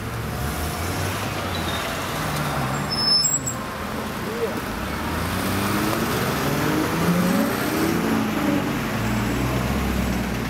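Street traffic with a car engine running in a steady low hum. People's voices come in over it in the second half.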